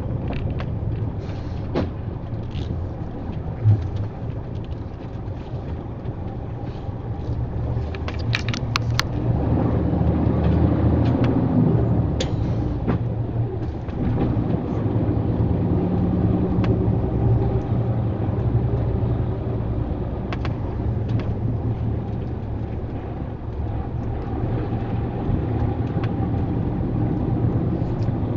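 Lorry engine and cab noise heard from inside the cab at low speed: a steady low drone whose pitch and loudness rise and ease as the engine works along a winding road. There are a few short sharp clicks or rattles, several of them together about eight to nine seconds in.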